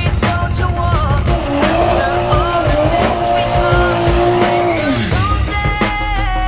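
A car engine revved high and held for a few seconds, falling away about five seconds in, with background music playing throughout.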